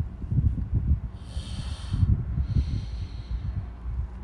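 A person breathing close to a phone's microphone, heard as uneven low rumbling puffs, with two hissing breaths: one a little over a second in and another around three seconds in.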